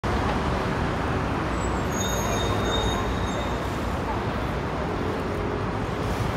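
Steady road traffic noise from passing vehicles, with a faint high thin tone for a second or so midway.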